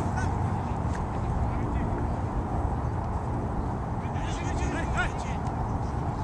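Steady low rumble of wind on the microphone over an open field, with a few faint distant honking calls about four and five seconds in.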